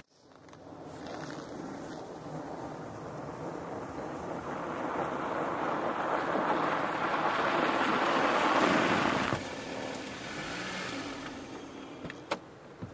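A car's engine and tyres on a snowy lot, a steady rushing noise that grows louder over several seconds, then drops abruptly about nine seconds in to a quieter steady run.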